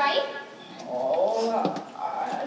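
A young actor's voice on stage: a short exclamation, then a drawn-out vocal sound that wavers in pitch about a second in.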